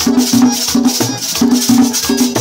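Live folk music on a diatonic button accordion, played with a metal güira scraping a steady rhythm and a hand drum beating along.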